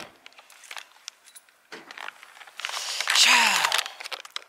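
A few faint clicks, then a loud jangle of keys with rustling handling noise near the end.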